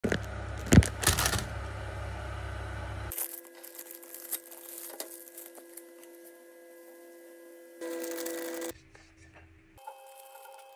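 Plastic instant-noodle packet crinkling and tearing, with sharp clicks in the first few seconds. After that come faint taps and clicks of handling over a steady hum.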